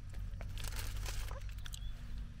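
Faint sounds of biting into and chewing a burger, with scattered soft crinkles and clicks from its paper wrapper, over a steady low hum.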